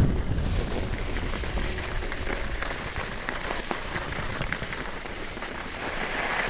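Skis hissing and scraping over groomed, packed snow on a downhill run, with scattered small clicks. Wind rumbles on the microphone, strongest at the start and easing off.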